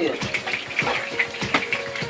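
Ostrich steak frying in hot oil in a frying pan: a steady sizzle with irregular small crackles and spits.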